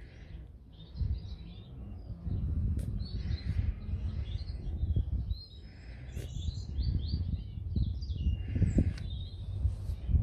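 Small birds chirping on and off in the background over a rough, uneven low rumble and rustle close to the microphone.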